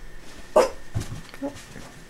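A small dog barks once sharply at play about half a second in, followed by a shorter, softer yip and a few light knocks.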